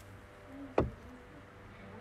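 A single sharp thump a little under a second in, over a faint steady low hum and a few short, low buzzes.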